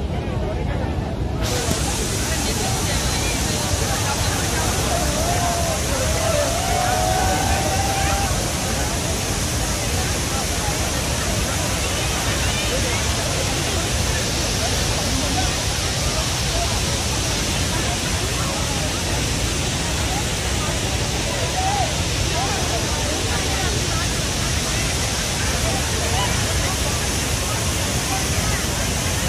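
Water rushing out of a dam's open spillway gates: a loud, steady, unbroken roar of falling water, with a crowd's voices calling out faintly over it.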